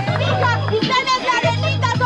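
Hip-hop beat with a deep, repeating bass note, with a voice over it.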